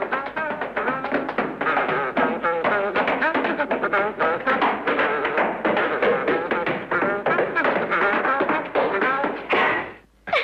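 Tap dancing: rapid, crisp tap steps on stairs over orchestral music.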